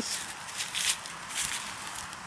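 A German Shepherd puppy's paws scuffing and scratching in wet mud and fallen leaves, giving a few short rustles.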